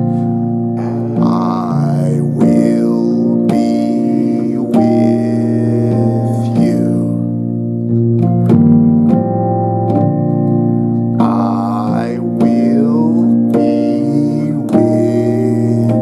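A keyboard plays sustained, voiced gospel piano chords in B-flat major, struck one after another every second or so. They include a B-flat chord with an added C (the second) and passing chords over a B-flat bass.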